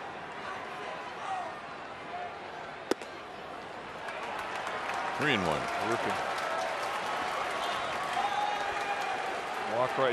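Ballpark crowd murmur with one sharp pop about three seconds in: a 95 mph four-seam fastball smacking into the catcher's mitt for ball three. Afterwards the crowd grows louder, with voices shouting from the stands.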